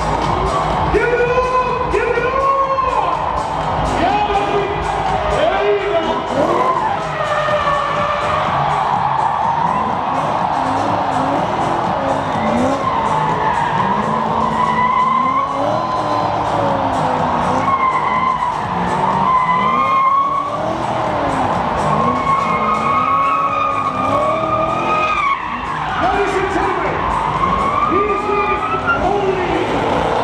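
Drift car doing donuts: its engine revving up and down again and again over the tyres screeching as they spin.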